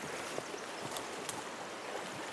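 Shallow river running over gravel, with a few faint splashes as a wader moves through the water toward a hooked fish.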